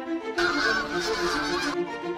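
A flock of greylag geese honking, a dense burst of overlapping calls lasting a little over a second that starts about half a second in, over background music.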